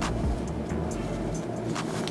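Background music with a deep, steady bass, with a few faint clicks as the satin drawstring bag is handled.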